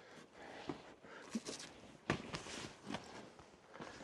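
Footsteps and scuffs of someone climbing over rock and loose gravel: a handful of irregular crunches, the loudest about halfway through.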